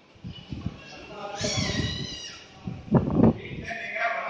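Speech in a large hall, a voice amplified over a public-address system, with a brief higher-pitched voice about a second and a half in.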